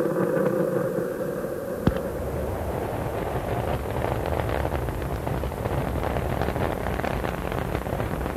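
Space Shuttle Columbia's rocket engines and solid rocket boosters at liftoff, heard as a low rumble. A steady drone in the first two seconds gives way to a dense, ragged crackle.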